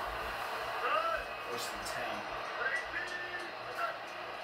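Television football broadcast: a commentator's voice, faint and indistinct, over the broadcast's steady background noise.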